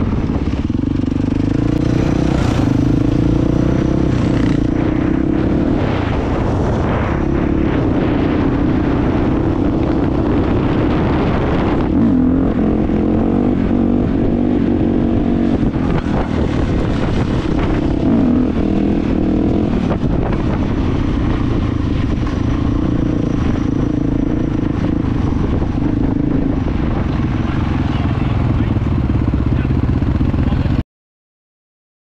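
KTM dirt bike's single-cylinder engine running under way, its pitch rising and falling with throttle and gear changes.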